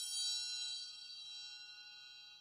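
The final note of an electronic track: a single bell-like metallic tone, struck just as the music cuts off, rings on faintly and fades away.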